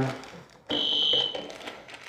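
A single high, steady electronic beep lasting under a second, from a hand-operated impulse heat sealer pressed shut on a polythene packet, signalling the end of the seal.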